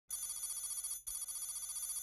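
Electronic trilling ring in two bursts of about a second each, with a brief gap between them, like a telephone's electronic ring.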